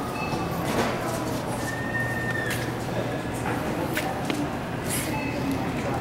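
Supermarket ambience: indistinct voices over a steady low hum, with scattered clicks and knocks and a short, held high tone about two seconds in.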